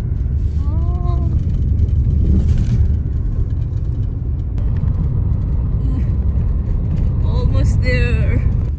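Road noise inside a moving car's cabin: a loud, steady low rumble of engine and tyres, with a brief voice about a second in and again near the end.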